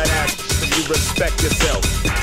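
Electronic dance music played in a DJ mix, driven by a steady kick drum beat with short pitched phrases that bend in pitch over it.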